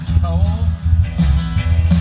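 Amplified country band playing a truck-driving song: strummed guitar over a steady bass line and beat, with the singer holding a word at the start.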